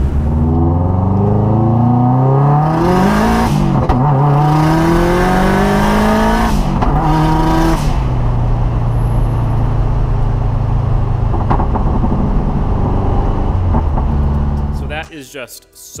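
Turbocharged engine of an all-wheel-drive Mazda Miata rally car, heard from inside the cabin, pulling hard with its pitch climbing through two upshifts at about 4 and 6.5 seconds in. About 8 seconds in it drops to a steady, lower cruising drone, which cuts off near the end.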